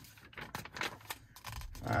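A glossy paper catalog page being turned by hand: a quick run of paper rustles and crackles that dies down before a spoken 'uh' near the end.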